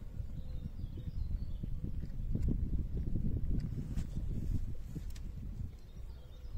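Irregular low rumbling of wind buffeting the microphone, strongest in the middle, with a few light clicks from the scale and sling being handled, and faint bird chirps early on.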